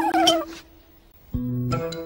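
A cartoon owl character's wavering, voice-like call that wobbles down in pitch and stops within the first half second; after a short lull, plucked guitar notes of the background music begin about a second and a half in.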